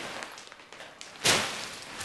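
Plastic packaging of a pillow crinkling faintly as it is handled, with one short, louder rustle a little past halfway.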